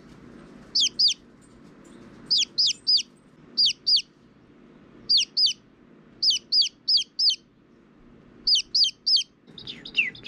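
A downy chick peeping loudly close to the microphone: short, high peeps that fall steeply in pitch, in quick runs of two to four, about sixteen in all.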